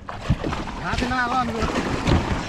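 Water splashing and churning beside an inflatable raft as a person drops into a plastic whitewater kayak and it slides off the raft's side, with wind on the microphone.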